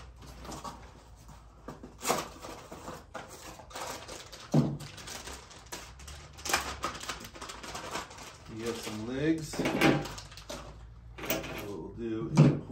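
Plastic wrap and a small plastic parts bag crinkling and rustling as they are handled and pulled off a scale platform, with sharp crackles every second or two.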